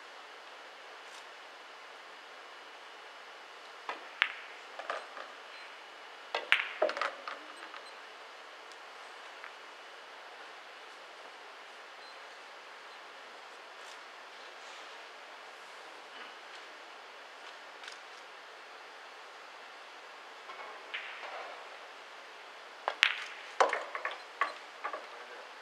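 Pool balls clicking: a few sharp clicks of cue tip on cue ball and ball on ball, in small clusters about four to seven seconds in and again near the end, over a steady faint hiss of room tone.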